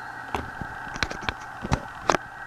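Four or five short, sharp clicks and taps from handling a small plastic device, over a steady high-pitched hum.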